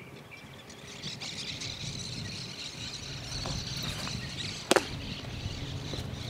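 A single sharp, loud crack of a baseball impact about three-quarters of the way through, with a short ring after it, over a steady high-pitched hum outdoors.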